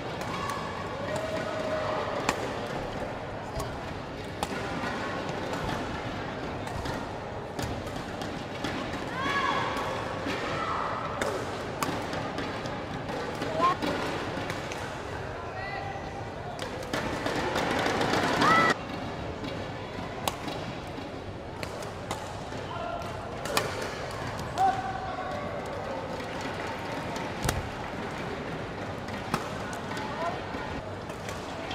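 Badminton play on an indoor court: sharp racket strikes on the shuttlecock, short squeaks and thuds from players' shoes on the court floor, and a constant hum of voices across the hall. A louder stretch of noise builds and cuts off suddenly about eighteen seconds in.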